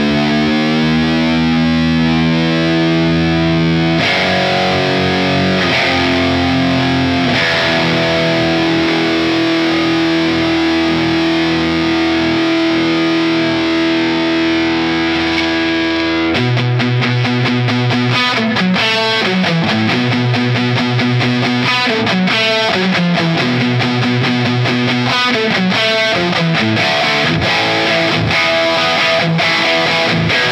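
Electric guitar, a Fender Jazzmaster, played through a Line 6 POD Express Guitar on its distorted high-gain lead amp model, based on the Peavey 5150. It opens with a chord bent upward in pitch and long sustained notes, then about 16 seconds in switches to fast picked riffing.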